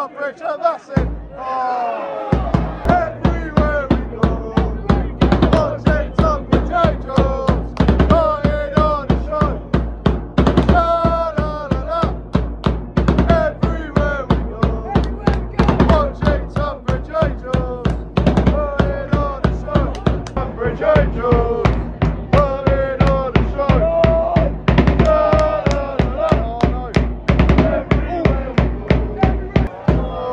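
Football supporters chanting in unison to a steady bass drum beat of about two to three strokes a second, clapping along. The drum starts about a second in.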